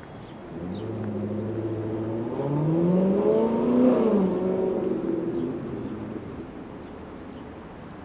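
A motor vehicle passing on the street: its engine note climbs in pitch as it accelerates, is loudest about four seconds in, then drops in pitch and fades as it goes by.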